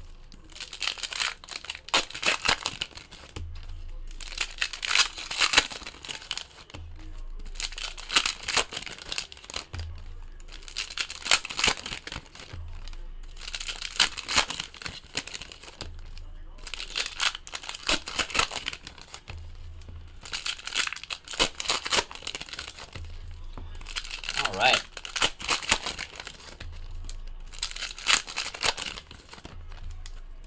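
Trading cards being handled and slid onto stacks, with plastic card-pack wrappers crinkling and tearing, in repeated bursts of rustling every second or two.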